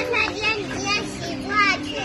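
A small child's high voice calling out a few short words.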